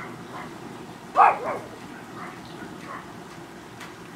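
A dog barks once, loudly, about a second in, followed by a few faint yips, over a steady low background rush.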